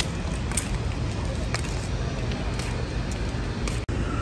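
Steady low outdoor rumble with a few faint clicks, cut off abruptly for an instant near the end.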